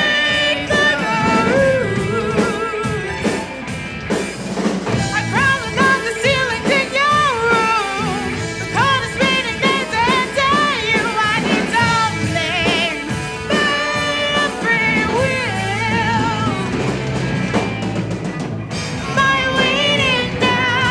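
Live rock band playing a fast progressive-rock song: a lead singer with marked vibrato over electric guitars, bass guitar and drum kit.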